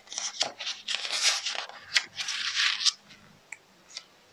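Paper rustling as a page of a picture book is turned by hand, in several brushes over about three seconds, then a couple of faint ticks.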